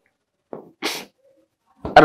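A man's quick, sharp intake of breath between phrases, heard as two short hissing puffs about half a second apart.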